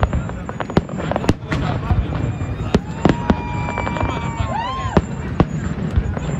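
Aerial fireworks bursting: a steady run of sharp bangs and crackles. A long whistling tone comes in about three seconds in, holds, then bends up and down just before the end.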